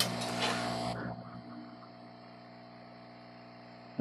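A hiss that starts suddenly and fades out after about a second, over a low, steady electrical hum that carries on.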